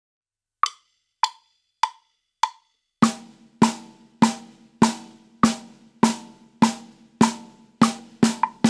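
Four sharp count-in clicks a beat apart at 100 beats per minute, then a snare drum struck in steady quarter notes, one stroke per beat, each hit ringing briefly.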